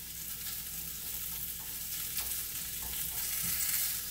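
Patty pan squash, carrots and spinach sizzling in a frying pan while a spatula stirs them, with a few light scrapes of the spatula against the pan.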